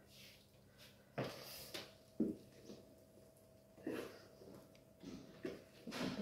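Faint scraping and several light knocks of a spatula against a mixing bowl and a baking tin as sponge-cake batter is spread onto parchment and scraped out of the bowl. A faint steady hum sits underneath.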